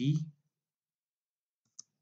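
The end of a spoken word, then a gap broken by a single computer keyboard keystroke click near the end.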